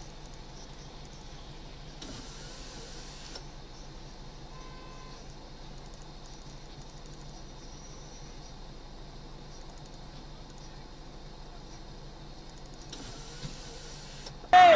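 Steady low hum of an idling car, heard from inside the cabin by a dashcam. There is a stretch of hiss about two seconds in and a faint short tone about five seconds in.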